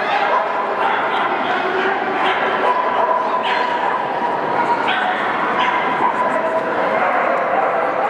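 Dogs yipping and barking in short sharp calls several times, with a drawn-out whine through the middle, over the steady murmur of a crowd.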